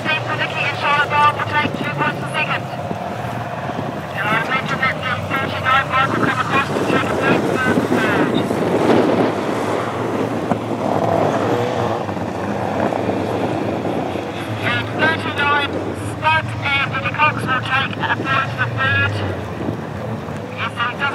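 A speedway sidecar outfit's engine running as it rounds the track, loudest about midway, with a voice talking before and after it.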